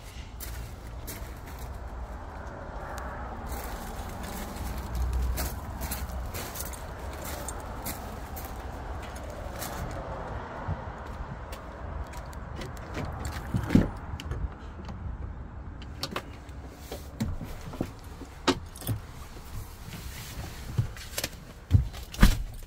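Steady outdoor background rumble. From a little past halfway there is a series of sharp clicks and knocks as the door of a Ford F-250 pickup is opened and someone climbs into the cab.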